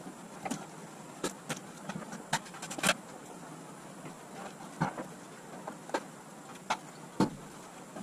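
Scattered knocks and clunks, about ten in all, the loudest a little before 3 s and a little after 7 s, from boxes and household goods being handled and set down while a storage unit is loaded, over a steady low background noise.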